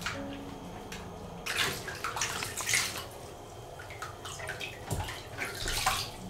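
Water splashing and dripping in a plastic basin as a kitten is washed, hands scooping and rubbing water over its wet fur. The splashes come unevenly, loudest from about one and a half to three seconds in and again near the end.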